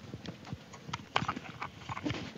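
Handheld microphone being passed from hand to hand: irregular knocks, clicks and rubbing of handling noise picked up by the microphone itself.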